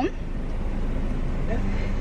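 Car engine idling, a steady low rumble heard from inside the cabin, with a faint steady hum joining near the end.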